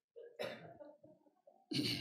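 A man coughing to clear his throat: a short cough about half a second in, then a louder one near the end.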